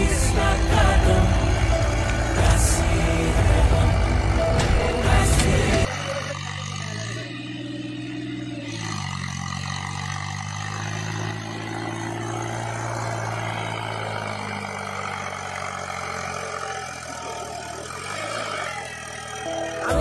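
Background music with a heavy beat for about the first six seconds, then it cuts off. A Massey Ferguson 246 tractor's diesel engine is then heard working through mud, its pitch rising and falling twice as the engine is revved and eased off.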